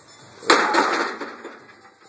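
A single loud metal clank about half a second in, trailing off in a short rattle: the leg-press sled, loaded with roughly 1890 lb of plates, coming down onto its stops at the end of a heavy set.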